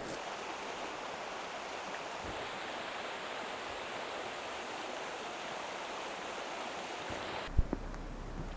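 Steady rushing of river rapids, an even roar of water that cuts off suddenly near the end, followed by a click.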